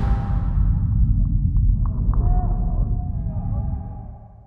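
A deep, muffled rumble with faint muffled tones and a few soft ticks over it, fading out near the end.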